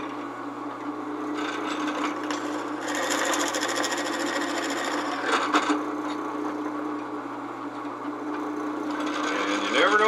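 Drill press running with a spade bit boring into a wooden 2x4, the motor humming steadily. A louder rough cutting noise comes from about one and a half to six seconds in, and again just before the end, as the bit chews into the wood down to the depth stop.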